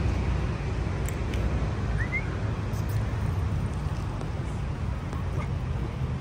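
Outdoor background noise: a steady low rumble, with a brief pair of rising high chirps about two seconds in.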